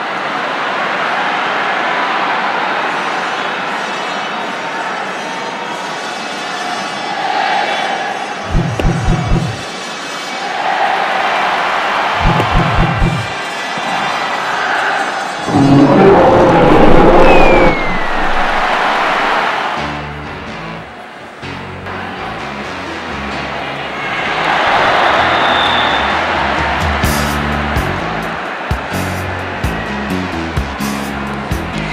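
Ballpark crowd noise, with two short runs of low thumps partway in. About halfway through comes the loudest sound, a dinosaur's roar. Music with a stepping bass line then takes over for the rest.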